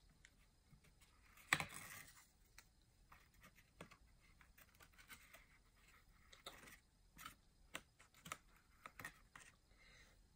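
Faint handling sounds of cardboard: laser-cut cardboard arm pieces rubbing and tapping as they are worked onto wooden dowel pins. A louder scrape comes about one and a half seconds in, then scattered small clicks and rustles.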